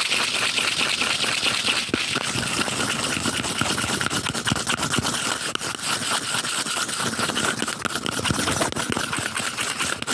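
Fast, continuous scratching and rubbing on a cardboard tube close to the microphone: a dense, steady crackle of fine scrapes.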